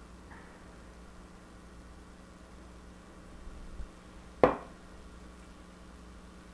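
Quiet room tone with a low steady hum, broken by one sharp knock about four and a half seconds in.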